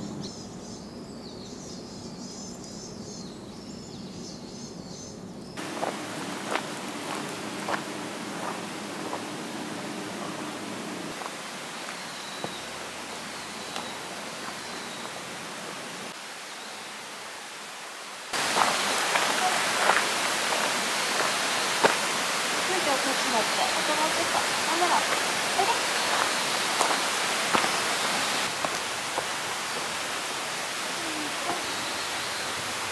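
Forest ambience: small birds chirping at first, then a steady hiss of outdoor background noise with irregular footsteps on a dirt trail, louder from about two-thirds of the way through.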